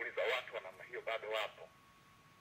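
A caller's voice speaking over a telephone line, stopping about one and a half seconds in; after that only a faint steady tone remains.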